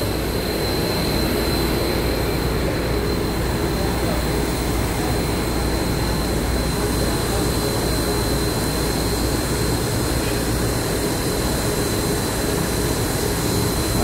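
CT273, a 2-8-2 steam locomotive standing under steam, giving off a steady hiss and hum with a thin high whine held at one pitch.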